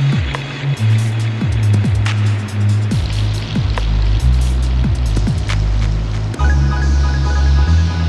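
Background music with deep bass notes and a drum beat; a repeating high synth line comes in about six and a half seconds in.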